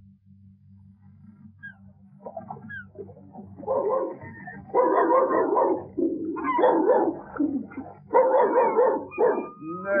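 An animal impressionist's voice imitating a dog whimpering and whining: a few faint short calls, then a run of louder wailing whines of about a second each, growing louder through the second half. A steady low hum runs underneath.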